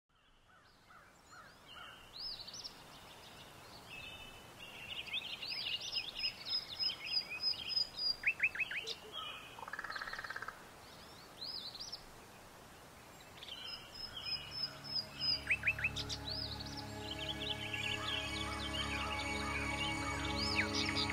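Several birds chirping and singing over a faint background hiss, fading in from silence at the start. From about two-thirds of the way through, a soft music score with long held tones comes in and swells under the birdsong.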